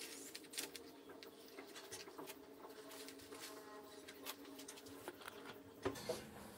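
Faint, scattered rustling and light clicks of soil and leaves as lettuce seedlings are handled and lifted from a seedling tray by hand, over a low steady hum, with a sharper click near the end.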